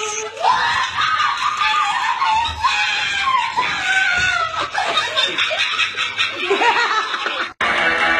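A young woman screaming and shrieking in fright in high, sliding cries, mixed with laughter. The sound cuts off abruptly near the end.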